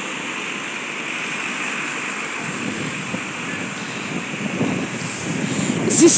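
Steady rushing outdoor noise of wind and distant street traffic, with a low rumble growing somewhat fuller in the middle of the stretch.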